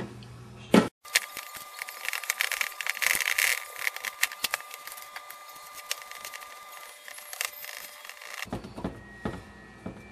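Hands working raw ground-meat mixture into a baking dish: a run of many small clicks, taps and knocks of fingers and dish. A brief dropout comes about a second in.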